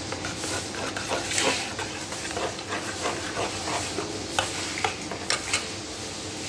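A metal spoon stirring a thin yogurt mixture in an aluminium pot, scraping and clinking against the pot's sides, with a few sharper clicks near the end.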